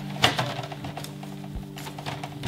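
Soft background music with steady held notes, over cloth rustling and a few light knocks as a cotton T-shirt is pushed down into a glass jar.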